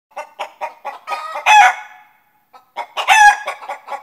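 A rooster clucking: a quick run of short clucks that builds into a loud squawk, then a second run that peaks the same way about a second and a half later.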